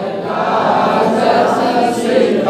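A group of voices chanting a Sanskrit verse together in sung recitation, one continuous blurred line of many voices.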